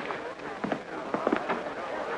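Indistinct murmur of a crowd of party guests, with a few short fragments of voices, over a steady hiss.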